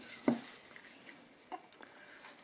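Light knocks and clicks of a plastic craft punch being handled and turned over against card: one soft knock just after the start, then two faint clicks near the end.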